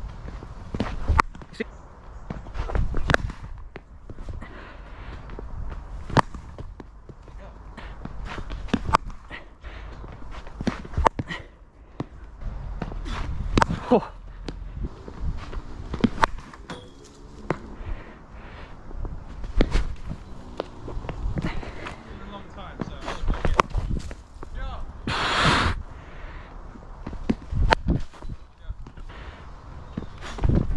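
Cricket net practice heard from the batter's end: a run of sharp, irregular knocks from the leather ball pitching on the artificial turf, meeting the bat and hitting the netting, with footsteps between deliveries. Late on comes a brief hiss lasting about half a second.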